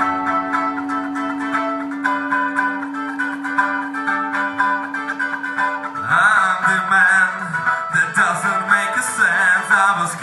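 Live band music: a song playing, with a held low note until about six seconds in, then a wavering melodic line higher up.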